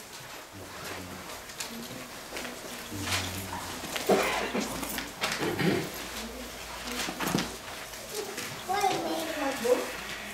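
Indistinct voices murmuring, loudest about four seconds in and again near the end, with faint paper rustling as the pages of a Bible are turned.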